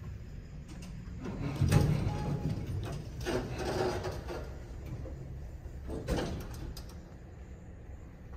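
Westinghouse elevator doors sliding open, a low rumble with a clunk about two seconds in, then another knock a few seconds later.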